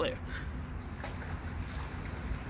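Low, steady outdoor background rumble during a pause in the talking.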